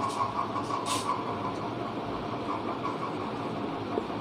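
A steady mechanical hum with a faint held tone, and a brief scratch of a marker writing on a whiteboard about a second in.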